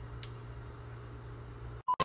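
Gas stove burner heating an empty wok: a steady low hum with a faint hiss, one small click about a quarter second in, and the sound cutting off abruptly just before the end.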